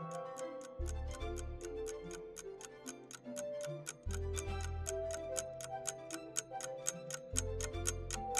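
Countdown-timer ticking sound effect, about four even ticks a second, over background music with held notes and a low bass note that comes in three times.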